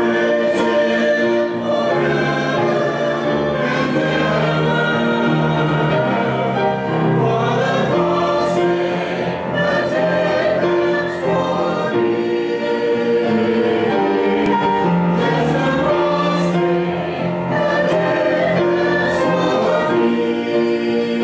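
Small church choir singing an anthem, sustained sung notes moving through a steady melody.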